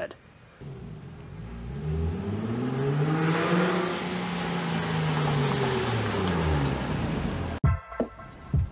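Nissan 350Z's VQ35DE V6 engine and exhaust as the car drives up the street. The engine note climbs in pitch and then falls away, and the sound cuts off abruptly near the end.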